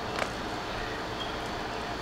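Steady background noise, with one faint click about a quarter second in.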